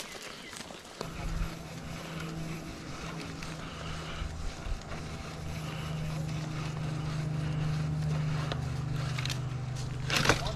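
An engine comes in abruptly about a second in and runs at a steady pitch.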